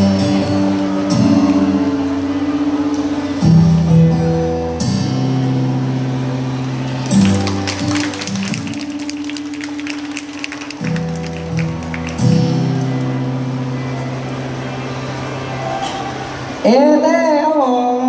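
Pop backing track playing through PA speakers in a large hall: held chords that change every few seconds, with a stretch of light rhythmic percussion in the middle. A man's voice starts speaking near the end.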